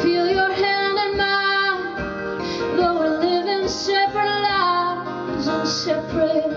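Live acoustic music: a woman singing a slow, sustained melody over strummed acoustic guitar.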